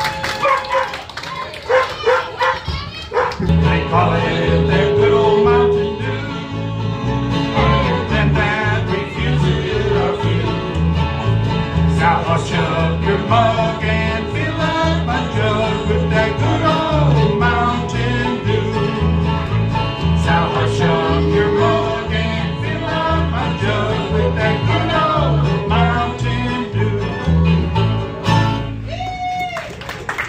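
Bluegrass string band playing live: banjo and acoustic guitars over a steady, rhythmic bass line. The full band comes in about three seconds in, after a few seconds of lighter picking.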